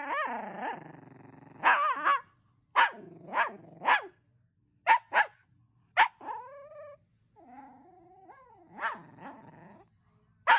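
Miniature dachshund growling in play and giving a string of short barks, with a drawn-out whining call about two-thirds of the way through.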